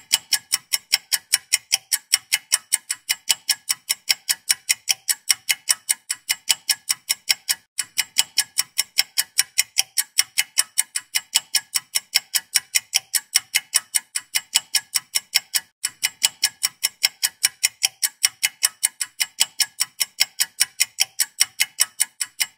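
Clock-ticking sound effect: sharp, even ticks at about four a second, looping with a brief break about every eight seconds. It serves as a thinking-time timer while the viewer works out the answer.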